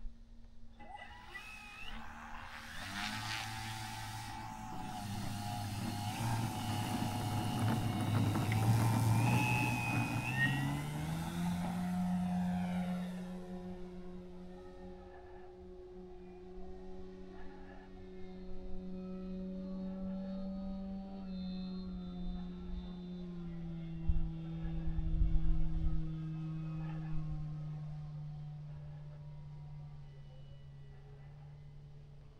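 Engine and propeller of a large radio-controlled model airplane throttling up for takeoff: a loud rising run with a sharp climb in pitch about eleven seconds in, then a steady drone that slowly lowers as the plane climbs away.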